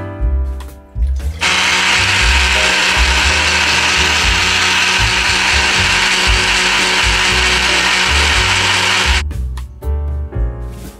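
Countertop blender running steadily for about eight seconds as it blends a milky banana drink, starting a little over a second in and cutting off near the end.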